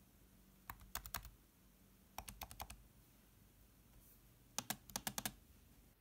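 Trackpoint buttons on a ThinkPad's Alps replacement touchpad being pressed: faint, soft clicks in three quick runs of four or five presses, spaced a second or two apart.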